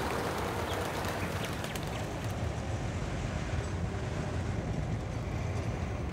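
Steady outdoor city ambience: a low, constant traffic rumble under an even hiss.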